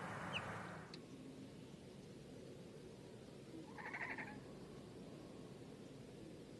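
Faint outdoor background with one short, pulsed bird call about four seconds in. The first second is louder, with a brief high chirp.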